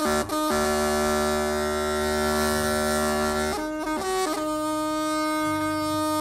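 A long bamboo wind pipe played solo, with a reedy, buzzing tone: a few short notes, then a long held note, a brief run of changing notes, and a second long held note.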